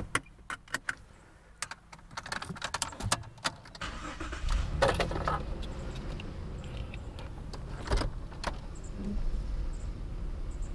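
Keys jingling and clicking at the ignition of a 2010 Jeep Liberty, then its 3.7-litre V6 starts about four seconds in and runs steadily at idle. A single sharp knock comes near eight seconds.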